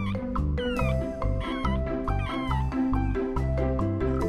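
Background music with soft mallet-percussion tones; over it a young Maltese puppy gives several short, high squeaky cries that rise and fall in pitch, mostly in the first half.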